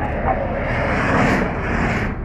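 Two Chevrolet Corvettes racing past at speed, their engine and road noise swelling to a peak a little over a second in, then falling away as they go by.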